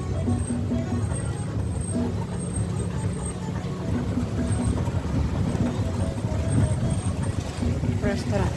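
Steady low rumble of a car's engine and tyres heard from inside the moving car, with soft background music playing over it.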